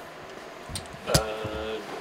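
About a second of faint room tone, then a click and a man's short hesitant "uh".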